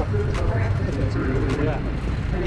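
A wavering, voice-like melody over a steady low rumble, with a few sharp clicks.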